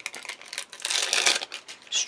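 Double-sided craft tape being peeled from its backing and handled on card: a crackly paper rustle with small clicks, loudest through the middle second.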